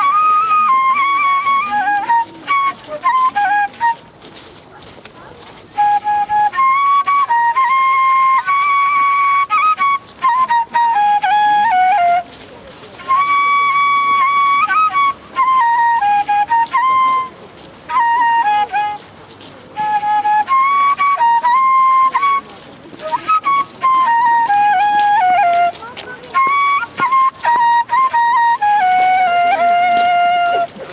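Kaval, the Bulgarian end-blown flute, playing a solo melody in short phrases separated by breathing pauses, the longest break about four to six seconds in. Many phrases hold a high note and then step down in pitch at their end.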